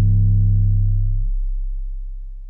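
A single long 808 bass note, compressed and distorted, playing on C: a deep sustained tone whose upper overtones drop away a little past halfway, leaving the low tone slowly fading.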